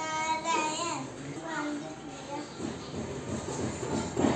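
A young child's voice singing: one held note for about a second that bends at its end, then a few shorter sung phrases.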